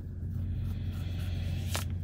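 Steady low hum of an idling truck's diesel engine, heard from inside the cab, with a short breath near the end.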